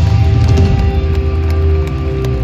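Live rock band of electric guitars, bass and drums holding a ringing chord with a few scattered drum and cymbal hits, as the song comes to its close.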